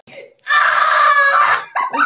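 A girl's loud scream lasting about a second, starting about half a second in, with brief vocal sounds just after it.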